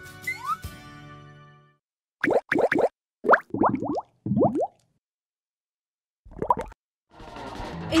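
Background music fades out, then an animated logo sting plays: a quick run of short rising cartoon bloops in three little groups. Music starts up again near the end.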